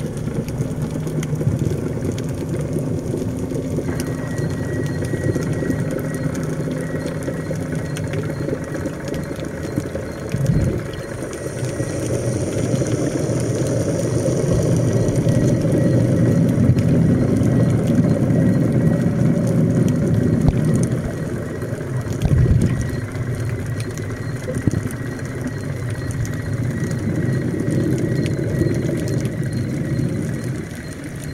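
Underwater sound: a steady low mechanical hum, engine-like, carried through the water, with two short low thumps about a third and two thirds of the way through.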